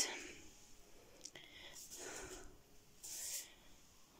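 Faint handling noise from a handheld camera being carried: a few short, soft rustling hisses.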